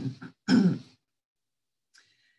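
A woman clearing her throat once, briefly.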